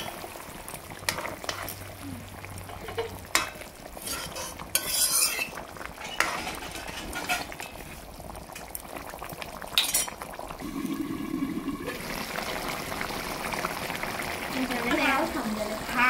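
A spoon stirring and scraping in an aluminium kadai, with scattered clinks against the pan, over the steady bubbling of a fish curry simmering in it.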